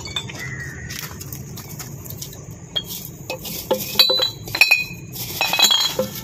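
Glass liquor and beer bottles clinking against one another as they are pulled out from under a wall and gathered up. It is a string of sharp, ringing clinks, loudest from about four seconds in to near the end.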